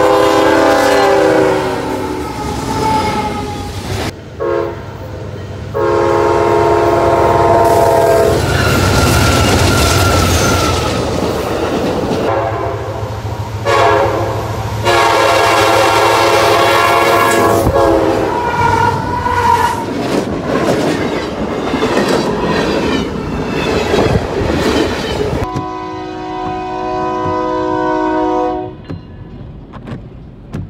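Diesel freight locomotives passing, in a string of short clips that cut abruptly from one to the next. The locomotive's air horn sounds a chord four times, each blast a few seconds long. Under the horn run the engine's rumble and the clatter of wheels on rail.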